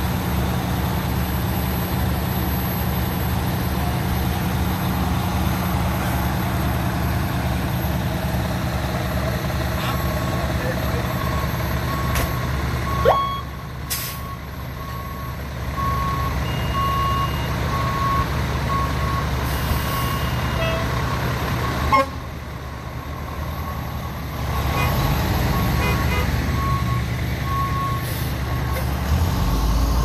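Fire trucks' diesel engines running with a steady low rumble, joined from about halfway by a repeated short high beeping. Near the end a truck's engine grows louder as it pulls past.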